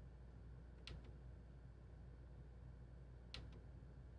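Near silence with two faint clicks, each a quick double click, about a second in and again near the end: a small push button being pressed and released to cycle the ARGB fan lighting presets.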